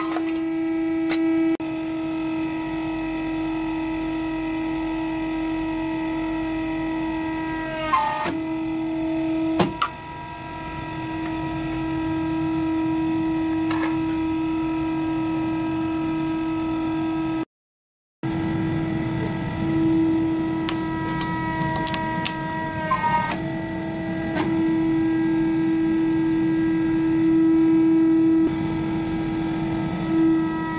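Hydraulic press's pump motor humming steadily, with a few sharp cracks and clicks as objects are pressed, and a brief cut to silence about halfway through.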